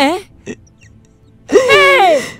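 A woman's voice: a short questioning "Hein?" at the start, then after a pause a loud, high-pitched anguished cry about one and a half seconds in, falling in pitch.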